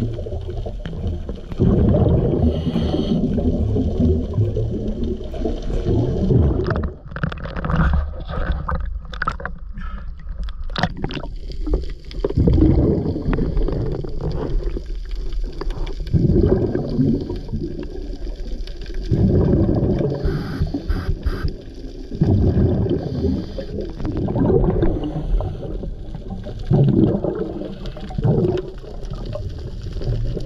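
Scuba diver's regulator breathing heard underwater: bursts of exhaled bubbles every few seconds, with a run of sharp clicks around the middle.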